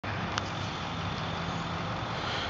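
Steady outdoor background noise with a low hum, like distant road traffic, and one faint click less than half a second in.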